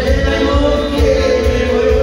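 Amplified band music for a Balkan kolo circle dance, with a held melody over a steady bass beat.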